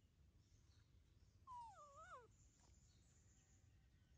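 A baby macaque gives one short, wavering whimper call, falling in pitch, about one and a half seconds in.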